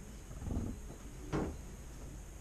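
Handling noise: a soft, low bump about half a second in, then a single short, sharp knock or tap about a second later.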